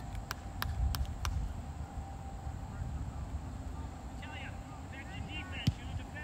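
Distant calls and shouts of players and spectators on a soccer field, coming in from about four seconds in, over a steady low rumble. A few sharp clicks sound near the start and one more near the end.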